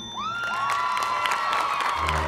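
Stadium crowd cheering, with a couple of rising whoops a fraction of a second in, followed by applause building.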